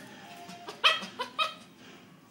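Silkese puppy giving three quick, high yappy barks in a burst about a second in, the first the loudest, while play-wrestling with another puppy.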